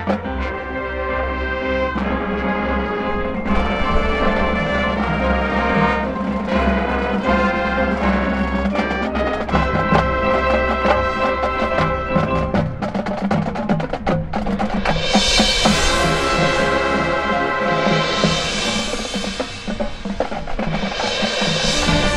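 High school marching band playing its field show: sustained wind chords over drumline and front-ensemble percussion, building to three loud swells near the end.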